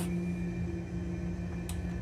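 A steady low drone with held tones and low rumble, and a single sharp click near the end.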